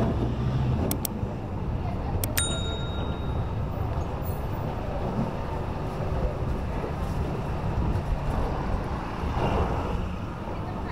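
Steady engine and road noise of a vehicle riding along a town street. A single ringing ding sounds about two and a half seconds in.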